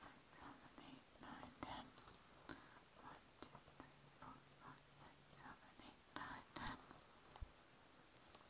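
Faint whispering, with a single sharp click about two-thirds of the way through.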